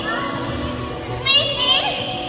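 Children's voices calling out, loudest about a second in, over steady background music.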